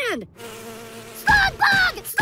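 A short, steady buzzing hum, then a cartoon character's voice breaking into quick repeated cries, each falling in pitch, about a second and a quarter in.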